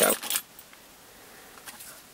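Keys and remote fob jangling on a keyring as they are handled, a short rattle of clicks at the start, then a few faint clicks near the end.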